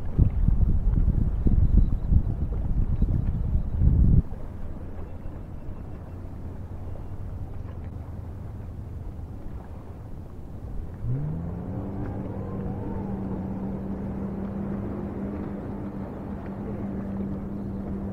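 Wind buffeting the microphone for the first four seconds, cut off abruptly. Then a motorboat engine heard across the water: about eleven seconds in its pitch rises and then holds steady.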